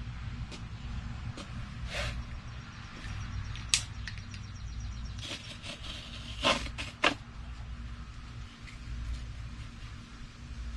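Knife trimming the partly cured, still-green fiberglass cloth on a wooden kayak, with scraping and a few sharp knocks and clicks, the loudest once a little before the middle and twice close together about two-thirds of the way through, over a steady low hum.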